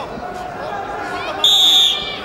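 Referee's whistle: one short, steady, shrill blast about one and a half seconds in, stopping the ground wrestling. Murmur of voices in the hall underneath.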